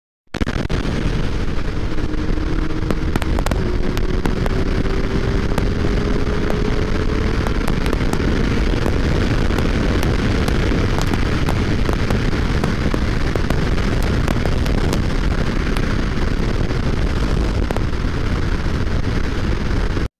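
Heavy wind buffeting on the camera microphone of a moving motorcycle, a loud steady rumbling roar with scattered crackles from the overloaded microphone that drowns out the engine. A faint whine rises slowly in pitch from about two to eight seconds in.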